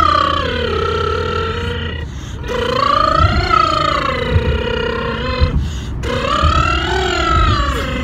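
Vocal warm-up sung in a moving car: three long sustained phrases, each gliding up and then back down in pitch, with short breaths between them. The low rumble of the car on the road runs underneath.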